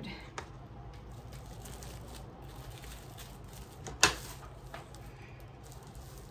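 Plastic bags crinkling as a hand impulse heat sealer is pressed shut and handled, over a low steady hum, with one sharp click about four seconds in.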